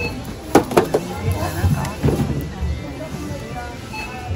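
Metal mooncake tins knocking three times in quick succession, about half a second in, as one tin box is pulled off a stack of tins. Background chatter and music follow.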